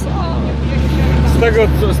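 A boat's engine running steadily under way, an even low hum, with men's voices over it.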